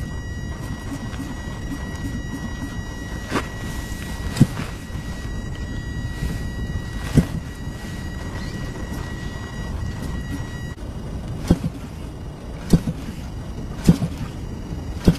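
Gasoline DLE-55 engine on a large RC model plane being hand-flipped to start: a few single sharp pops spread over the seconds as the propeller is flipped, without the engine settling into a run. A steady low rumble lies underneath.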